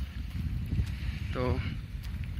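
Wind buffeting the microphone: an uneven low rumble, with one short spoken syllable about one and a half seconds in.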